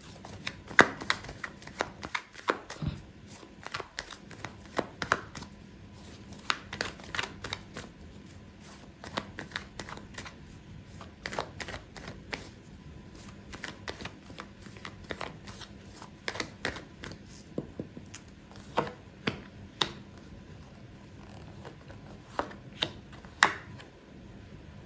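Tarot deck being shuffled by hand: a long, irregular run of soft card snaps and slides. Near the end, cards are dealt face down onto the mat.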